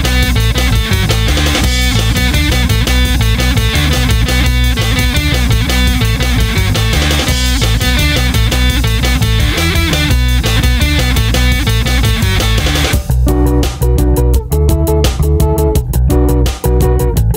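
Instrumental section of a rock song: electric guitar over bass and a drum kit, with no vocals. About thirteen seconds in, the full band drops back to a sparser, choppier part with short breaks.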